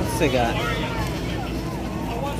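People talking in the background, over a steady low hum.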